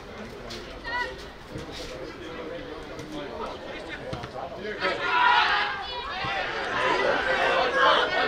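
Voices on a football pitch: scattered calls, then many overlapping shouts from about five seconds in, while the ball is in the goalmouth.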